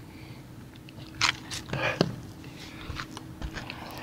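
Surf fishing rod and reel being handled, giving a few light knocks and crunching scrapes, the clearest about a second and two seconds in.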